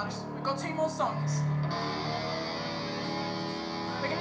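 Distorted electric guitar sounding a chord that is left to ring and sustain, with a short low bass note about a second in, over crowd chatter.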